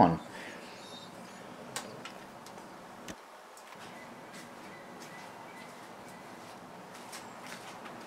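Faint steady background noise with no clear source, broken by two faint clicks, about two and three seconds in.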